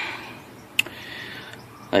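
Quiet background hiss with one short sharp click a little under a second in.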